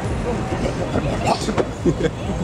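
Mercedes Sprinter rescue van pulling away over brick paving: engine and rumbling tyre noise, with onlookers' voices mixed in.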